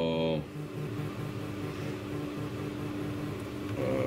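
A steady low hum, from an appliance or fan that cannot be identified, running throughout, with a man's brief 'uh' at the very start.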